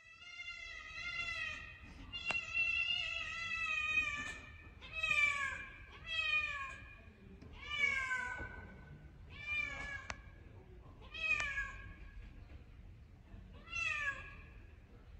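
A colorpoint cat meowing over and over: two long drawn-out meows, then about six shorter ones every second or two, the later ones falling in pitch.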